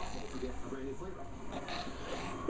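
Faint, indistinct talking in the background, with no clear words.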